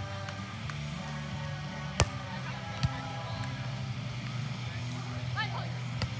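A sharp hand-on-ball slap of a beach volleyball serve about two seconds in, followed just under a second later by a fainter hit as the serve is received, over background music and voices.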